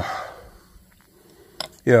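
A man's voice trailing off in a drawn-out 'um', then a quiet pause with one faint click near the end before he speaks again.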